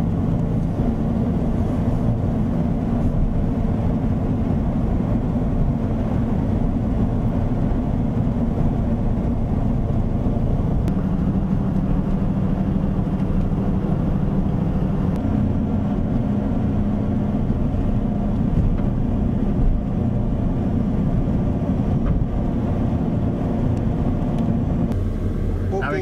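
Vehicle engine and road noise heard from inside the cabin while driving at a steady speed, the engine note shifting a little now and then.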